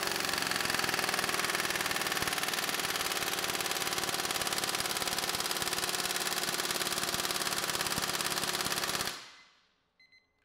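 Impact wrench hammering continuously against a torque-test dyno through a thin-wall 12-point chrome impact socket: a fast, even rattle of blows that stops suddenly about nine seconds in.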